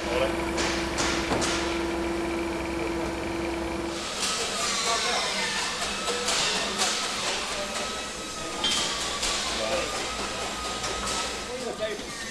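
Workshop noise. For the first four seconds a forklift's motor gives a steady hum and tone, with a few sharp knocks. It cuts off abruptly, and then comes a busy clatter and hiss of parts being handled, with a faint wavering tone.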